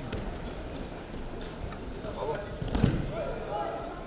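Wrestlers' feet and hands thudding and slapping on a wrestling mat in a large echoing hall, the loudest thud about three seconds in, with raised voices calling out over it in the second half.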